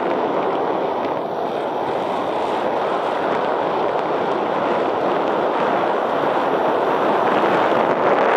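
Steady rush of airflow over the camera microphone of a paraglider in flight, an even wind noise without breaks.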